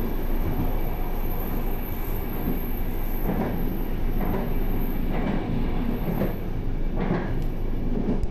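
Intercity passenger train running at close to 160 km/h, heard from the rear end of the last coach: steady wheel-on-rail rolling noise, with a few brief swells in the second half.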